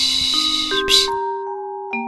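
Slow lullaby melody of held single notes with a steady recorded 'shh' shushing over it. The shushing stops a little after a second in, leaving the melody alone.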